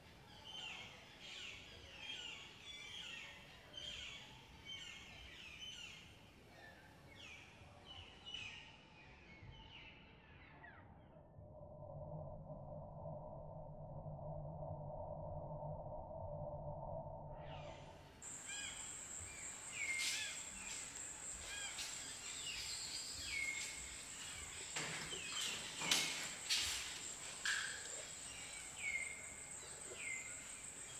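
Birds chirping over and over, short calls repeating every second or so, with a muffled stretch in the middle where only low sound remains. Later a steady high whine sets in under more repeated falling chirps, with a few knocks near the end.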